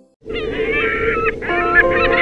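Birds singing and calling with quick warbling, whistled phrases, over a held music chord that fills out about a second and a half in. It starts suddenly just after a moment of near silence.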